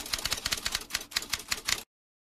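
A typing sound effect: a quick run of key clacks, about ten a second, that stops abruptly near the end.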